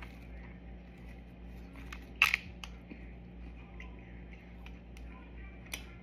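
A person chewing a bite of garlic bread: faint mouth clicks and one short, sharp, louder sound about two seconds in, over a steady low hum.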